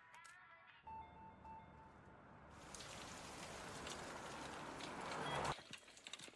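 Dramatised sound effects of the oncoming truck in the rain. A low rumble with a short two-beep tone comes in about a second in. Then a rushing noise swells louder for about three seconds and cuts off abruptly near the end, at the moment of impact.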